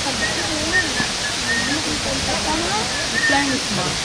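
A steady rushing hiss under faint, overlapping voices of people talking.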